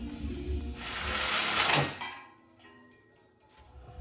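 A power saw cutting through a steel exhaust header tube, a burst of cutting noise lasting about a second.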